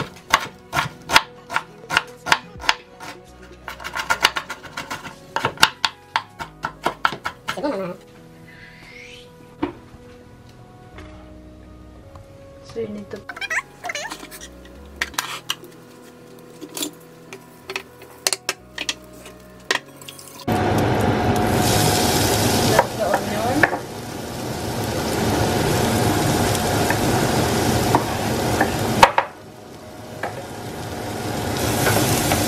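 Chef's knife chopping an onion on a wooden cutting board, a quick run of knocks that thins out after about eight seconds into a few scattered knocks and clinks. About twenty seconds in, a loud sizzle starts suddenly as diced onion goes into melted butter in a stainless saucepan, and it eases off briefly near the end.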